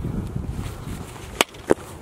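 A foot kicking at the cap of a plastic water bottle: two sharp knocks about a third of a second apart near the end, over low outdoor rumble.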